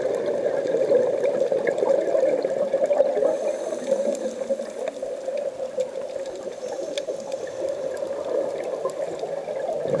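Muffled underwater noise heard through a camera housing on a scuba dive: a steady, churning water sound.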